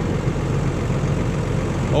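Tractor diesel engine running steadily under load while pulling a plough, an even low hum.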